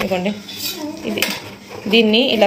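Metal hand tools clinking and clicking against each other and the floor, with a sharp click about a second in, over low voices.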